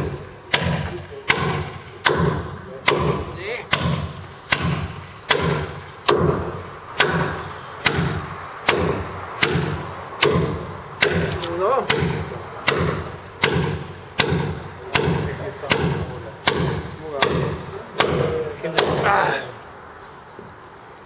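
Steel claw hammer driving a large nail into a timber roof beam: about two dozen sharp, even blows, roughly one every 0.8 seconds, stopping shortly before the end.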